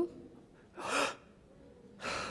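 A man's single sharp gasp, a quick noisy intake of breath about a second in, acted out as someone drawing breath again.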